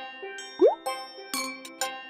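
Light children's music with short notes, and about half a second in a quick rising cartoon pop sound effect, the loudest sound here, as a beetroot is pulled out of the soil.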